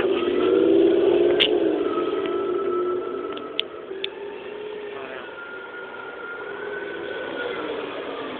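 Supercharged 402 V8 of a 2005 Pontiac GTO revving as the car drives across the lot, loudest about a second in, then running more quietly with its pitch rising and falling. A thin high whine comes and goes twice.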